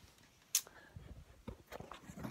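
Handling noise from a handheld phone camera being swung around: one sharp click about half a second in, then a few faint knocks and rustles.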